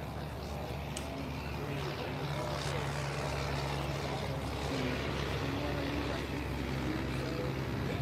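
A steady low engine drone that swells slightly after the first second or two, with faint voices in the background.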